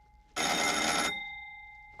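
Electric signal bell of a 1928 Isotta Fraschini's rear-passenger-to-chauffeur direction system rings in one short burst of under a second, about a third of a second in. Its tone then fades away. Each ring tells the chauffeur that the passenger has selected a new direction.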